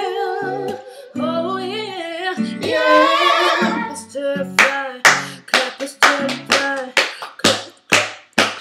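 A woman singing a wordless, wavering run over acoustic guitar chords. About halfway in, the voice stops and the guitar switches to sharp, percussive strokes, about three a second.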